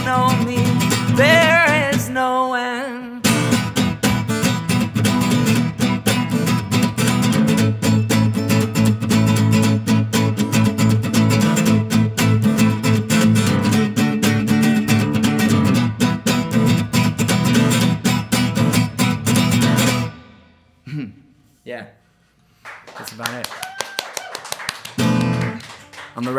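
Solo acoustic guitar played hard and fast in a song's closing section, after a last held sung note in the first two seconds. The strumming stops suddenly about twenty seconds in, and a few quieter notes ring out before talk begins at the very end.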